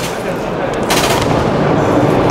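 A short burst of rapid full-auto airsoft fire about a second in, over the steady noise of a busy exhibition hall.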